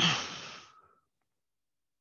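A person's breathy sigh: one exhale with a falling pitch, fading out within about a second.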